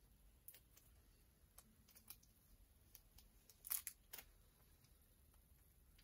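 Near silence broken by a few faint clicks and rustles of handling, the loudest two just before and just after the middle: a thick trading card being worked into a rigid plastic top loader.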